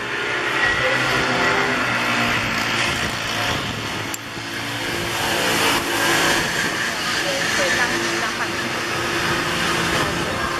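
A vehicle engine running close by, a steady low hum, with people talking in the background.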